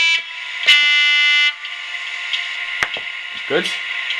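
Diesel locomotive horn from a model Class 67's DCC sound decoder, played through a small speaker. One blast cuts off just after the start, and a second blast of under a second begins about 0.7 s in, over a steady high hum. A single click comes near the end.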